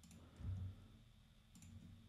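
Faint keyboard key clicks, a few scattered keystrokes, with a soft low thump about half a second in.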